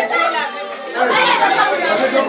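Several people talking and calling out over one another, with music playing underneath.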